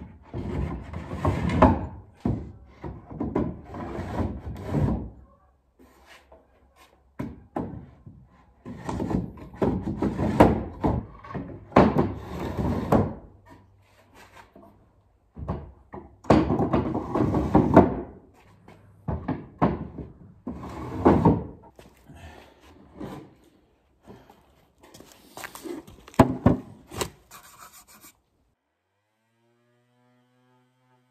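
Wooden drawers of a circa-1900 apothecary cabinet being slid into and out of their cubby holes: repeated wood-on-wood scraping in bursts of one to three seconds, with knocks between, stopping near the end. Some drawers have swollen with humidity and are too big for their openings, so they rub and bind as they go in.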